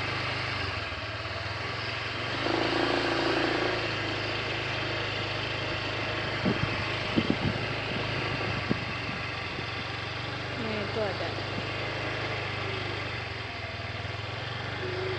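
A steady low mechanical hum, like a machine or engine running at idle, with faint voices now and then and a handful of short knocks in the middle.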